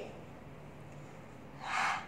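Low room tone, then near the end a short breathy sound from a person, with no voiced pitch.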